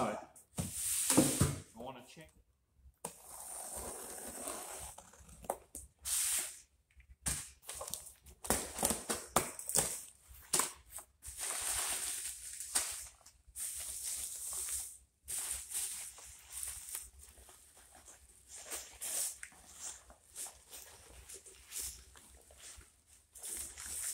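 Crumpled packing paper and a plastic bag rustling and crinkling in irregular bursts as a cardboard box is unpacked by hand.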